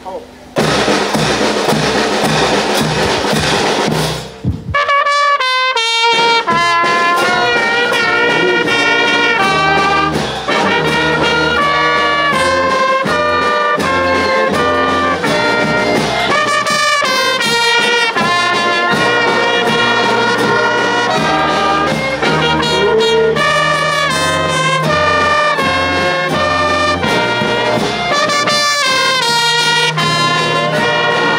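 Brass band of trumpets, saxophone and a tenor horn playing a melody in sustained notes over a steady bass-drum beat. The first four seconds or so are loud drumming with a noisy clatter, before the horns come in.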